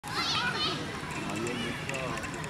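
Children playing outdoors: overlapping children's voices and chatter, with a high, wavering call near the start.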